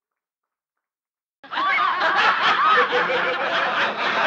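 Silence, then about a second and a half in a crowd of people laughing and chuckling starts suddenly and carries on, many voices overlapping.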